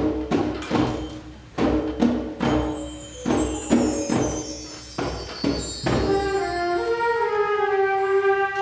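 A youth concert band playing: repeated accented chords punctuated by percussion hits for about the first six seconds, then held chords.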